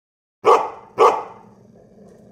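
A dog barking twice, about half a second apart, each bark sharp and loud, with a softer low sound lingering after them.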